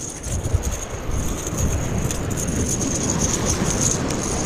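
Steady outdoor noise of wind rumbling on the microphone and surf washing against jetty rocks, with a faint steady high tone over it.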